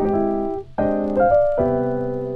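Background piano music: chords struck and left to fade, with a short break about three-quarters of a second in.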